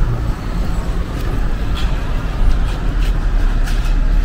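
Car driving slowly in town traffic, heard from inside the cabin: a steady low engine and road rumble with a few faint ticks.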